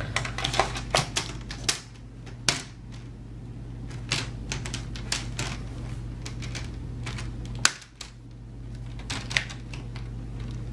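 Plastic screen bezel of an HP Pavilion 15 laptop being pressed onto the display lid, its clips snapping into place in a series of irregular sharp clicks. The clicks come thickest in the first couple of seconds, and the loudest comes near the end.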